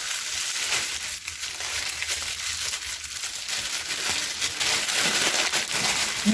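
Thin plastic bread bag crinkling and rustling as it is twisted and folded shut by hand, a continuous irregular crackle.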